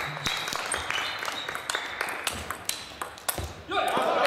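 Table tennis rally: the ball clicking sharply off bats and table in quick, irregular exchanges, in a large echoing hall. Near the end a loud voice shout cuts in as the point is won.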